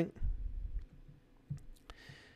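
A low rumble in the first second, then three small sharp clicks close together about a second and a half in.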